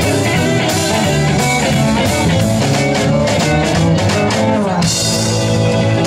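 Live rock-and-roll band playing an instrumental passage: electric guitars over a steady drum-kit beat. A falling run of notes leads into a cymbal crash about five seconds in.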